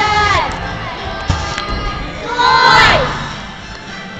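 Spectators' high-pitched shouts of encouragement for a gymnast: a long drawn-out call that fades about half a second in, then a second, louder held call near three seconds in that falls away in pitch at its end.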